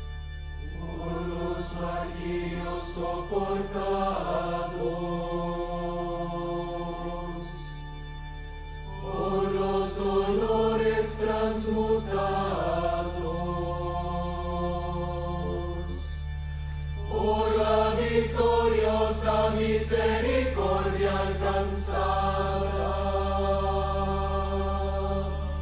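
Choir of women's voices singing a slow chant of long held notes, in three phrases that begin about a second in, about nine seconds in and near seventeen seconds, the later two louder. A steady low hum runs underneath.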